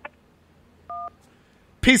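A single short telephone keypad beep, the two-tone DTMF signal of the "1" key, about a second in, on a call-in phone line. A man starts speaking near the end.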